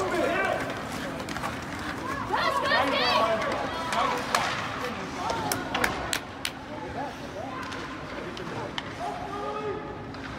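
Ice hockey game in play: players and spectators shouting and calling out across the rink over a steady rink din, with several sharp clacks of sticks and puck in the middle.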